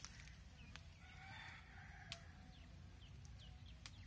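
A rooster crowing once, faint and distant, starting about a second in and lasting about a second and a half. A few sharp clicks from the leafy branches being pulled and picked.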